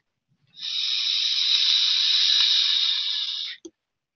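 A long, steady breathy hiss close to the microphone, a person blowing out a breath, starting about half a second in and stopping sharply after about three seconds.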